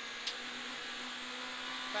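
Peugeot 106 GTi rally car's 1.6-litre four-cylinder engine running hard at a steady pitch, heard from inside the cabin over a constant rushing noise.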